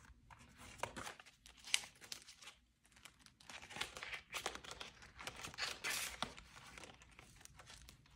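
Paper banknotes and clear plastic zip pouches in a ring binder rustling and crinkling faintly as cash is handled, with irregular light clicks.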